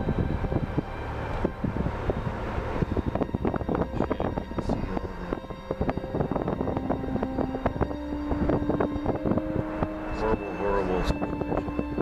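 A vehicle's engine and road noise while driving slowly, with constant crackling on the microphone.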